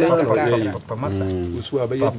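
Speech: a man talking, with one drawn-out, steadier stretch about a second in.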